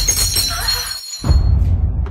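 A ceramic cup smashes on a tiled floor right at the start, a sharp crash whose high ringing from the scattering shards fades out within about a second and a half.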